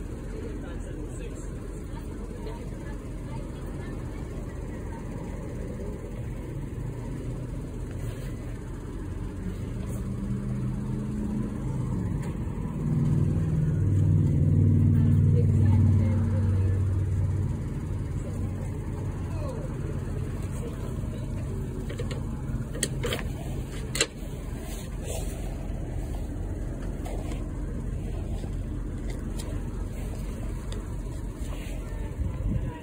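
Car engine running in a drive-thru lane: a steady low hum that grows louder for several seconds around the middle, then settles back. A couple of sharp clicks sound near the end.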